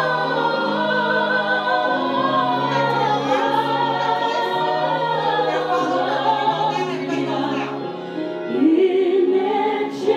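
A woman singing a slow, gospel-style song into a microphone over an accompaniment of held chords. Near the end she sings a loud, rising phrase.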